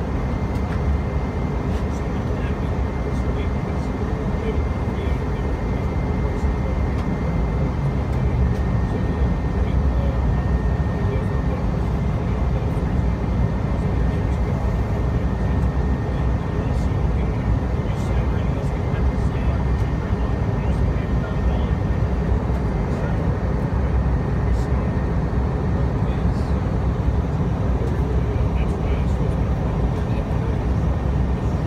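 Airliner cabin noise on approach: the engines and airflow make a steady low roar, with a thin steady whine above it.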